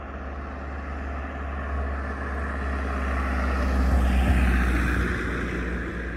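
A car driving past on the street, its engine and tyre noise building to a peak about four seconds in and then fading away.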